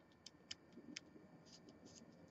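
Near silence with a few faint, small metal ticks from a screwdriver working the post screw of a rebuildable atomizer deck, pinching down the coil wire.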